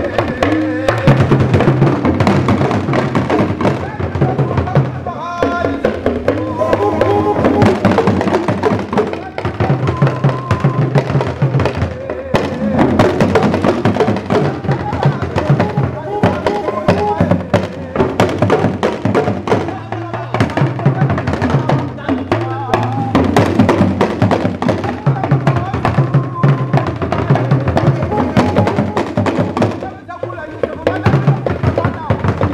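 Dagomba drum ensemble playing: several hourglass talking drums (luŋa) struck with curved sticks, with a gungon bass drum beneath them, in a dense, continuous rhythm.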